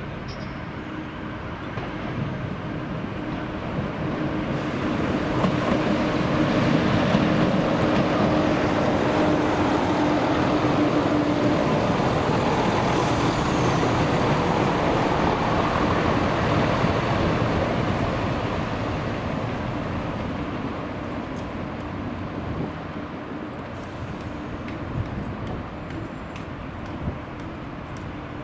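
A diesel train passing through a station: the sound builds over a few seconds, holds at its loudest with a steady low hum for about ten seconds, then fades away.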